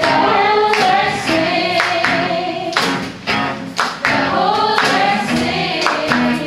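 Live worship song: several voices singing together into microphones over acoustic guitar, with a regular sharp beat running through it.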